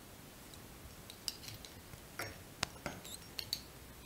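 Faint handling noise of fingers working a fly-tying hook, its thread and a black foam strip: several small, sharp clicks and light rustles, the loudest a little past halfway.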